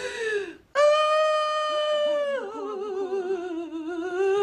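A woman wailing in tears: a short falling sob, then a long, high drawn-out cry that drops lower and wavers.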